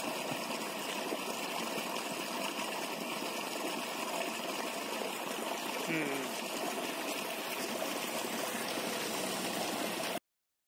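Water running steadily in an irrigation channel, a continuous rushing hiss with no break. A faint voice is heard briefly about six seconds in.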